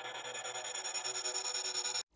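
Serum wavetable synth effect patch built on a feedback wavetable, playing through delay: a dense sustained electronic tone with many high overtones, pulsing quickly and swelling slightly, then cutting off suddenly at the end.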